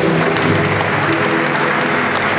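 Congregation applauding over live music from a band of musicians, whose steady held notes run under the clapping.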